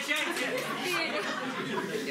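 A group of people chattering at once, many voices overlapping with no one voice standing out.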